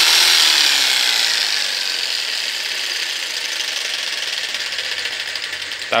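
DeWalt jigsaw's motor running with the blade cycling, loudest at first and slowly fading, then cutting off near the end. It runs weakly because its worn carbon brushes no longer make proper contact with the armature.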